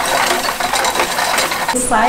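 Hand-cranked coffee depulper being turned with coffee cherries in its hopper: a mechanical rattling made of a dense run of small clicks, ending just before a cut.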